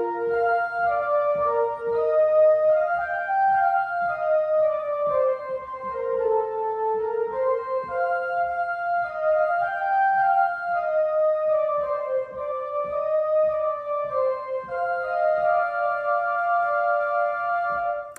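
A hymn descant line played on a keyboard instrument: a single high melody of held, steady notes that step up and down in pitch and stop just at the end.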